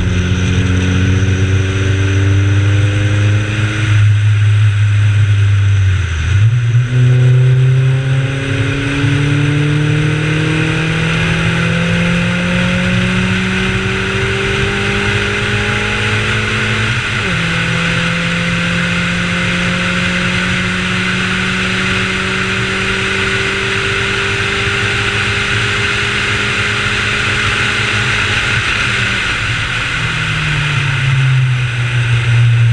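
Honda CRX race car's four-cylinder engine under hard acceleration, its note climbing steadily, dropping suddenly in revs about seventeen seconds in, then pulling up again. Steady wind and road noise runs underneath.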